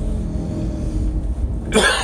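A man coughs sharply once near the end, over the steady low rumble of a car's cabin.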